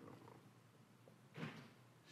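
Near silence: room tone, with one short faint breath about one and a half seconds in.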